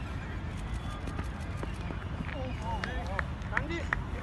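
Players' voices calling out across a cricket ground, starting about halfway through, over a steady low rumble. A few sharp clicks come near the end.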